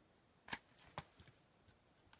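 Faint clicks and taps of a DVD case being handled, with two sharper clicks about half a second and one second in.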